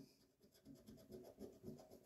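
Faint scraping of a coin over the coating of a scratch-off lottery ticket, a few short strokes in the second half.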